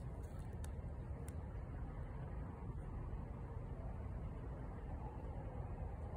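Faint, steady low outdoor rumble of background noise, with a couple of faint clicks in the first second or so.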